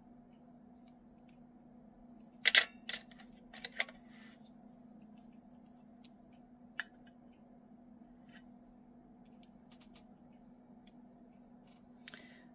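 Small metal watercolour paint tubes and a tin palette being handled: a few sharp clicks and taps, a cluster a few seconds in and one more about halfway, over a faint steady hum.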